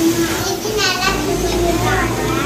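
A child's high-pitched voice calling out with a wavering pitch, once about half a second in and again near the end, over background children's chatter.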